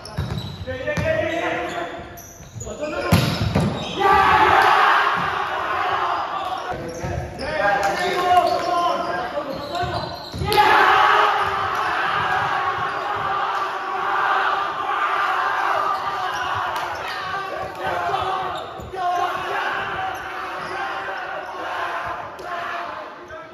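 A volleyball rally in a large, echoing gym: knocks of the ball being struck and hitting the wooden floor, with players calling out. About ten seconds in, loud shouting and cheering breaks out and carries on, as players celebrate a point.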